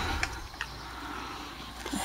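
A quiet lull: a low steady hum under a faint background, with a few faint clicks as a handheld camera is moved about.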